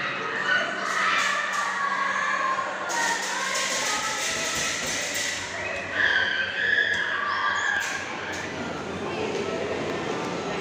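Indistinct chatter of people talking in the background, with a broad hiss from about three to five and a half seconds in and a few sharp clicks.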